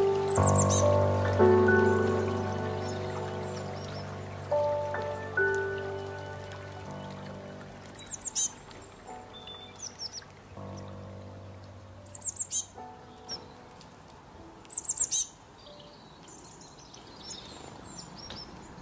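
Gentle background music of held, slowly fading notes, dying away in the second half. Over it come short, quick bursts of high bird chirps: one near the start and three more later on.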